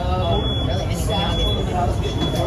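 Indistinct voices of people talking over a steady low rumble, with a faint high tone that comes and goes.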